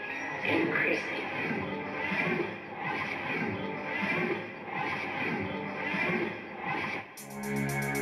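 An electronic music track playing through the XGIMI Mogo 2 Pro projector's built-in speaker as a test of its sound quality, opening with a pulsing beat. About seven seconds in, the arrangement changes suddenly: sustained synth notes and a fast high ticking rhythm come in.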